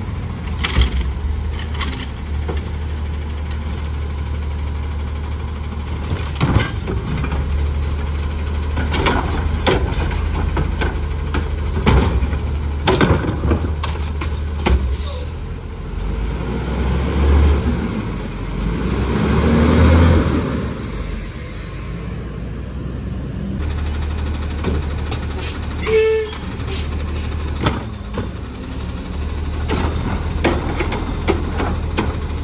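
Autocar ACX front-loader garbage truck with a Curotto-Can arm: its diesel engine runs steadily with air-brake hiss, swells in a rev about two-thirds of the way through as the hydraulics work, and scattered clanks and knocks come from the arm and the carts.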